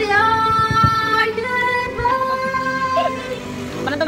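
A woman singing into a microphone over backing music, holding a few long notes one after another.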